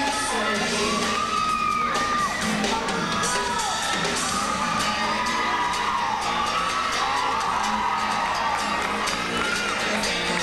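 Show music for a winter guard routine, with a large crowd cheering and shouting over it throughout.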